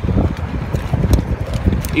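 A few light knocks of dry driftwood sticks clacking against each other and the rock as they are picked up, over wind rumbling on the microphone.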